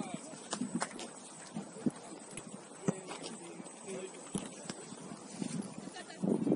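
Football being kicked several times at irregular intervals, sharp knocks heard among faint shouts of players.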